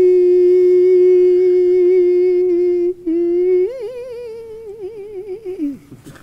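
A voice humming one long steady note that breaks off briefly about three seconds in, then comes back, rises, wavers up and down with a wide vibrato and dies away near the end.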